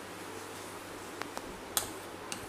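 Sharp clicks and taps from sifting steamed rice flour through a sieve: three short clicks in the second half, the last the loudest, over a faint steady hum.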